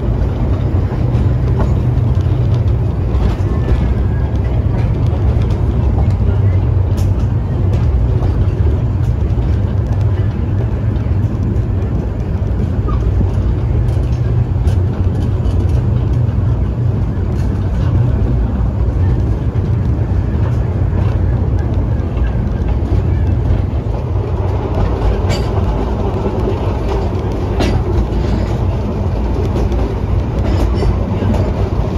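Narrow-gauge steam-hauled passenger train in motion, heard from a carriage window: a steady low rumble of the wheels running on the track, with occasional sharp clicks.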